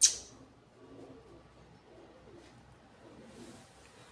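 A sharp click right at the start, then faint, repeated low cooing of pigeons.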